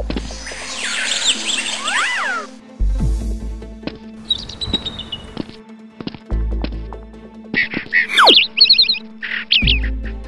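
Background music with a deep bass hit about every three seconds, overlaid with high chirping and swooping sounds.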